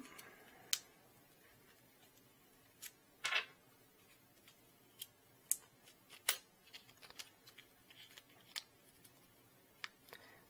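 Faint scattered clicks and a brief rustle from small metal parts and clear plastic parts bags being handled, with roughly a dozen light ticks and one longer rustle about three seconds in.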